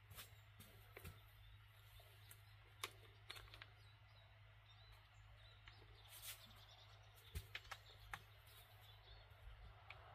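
Near silence: faint outdoor background with a few soft clicks and rustles of someone moving about.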